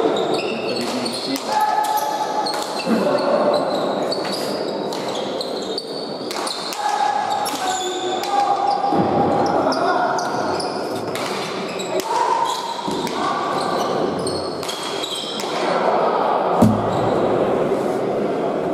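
A pelota ball being struck and smacking off the walls and floor of an indoor court, a series of sharp impacts echoing in the hall, the loudest near the end. Voices carry on underneath.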